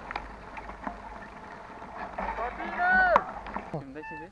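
Wind rumble and rattling handling noise on a small action-camera microphone moving with a bicycle over open ground, with scattered clicks. About three seconds in, a short high call rises and then falls away sharply.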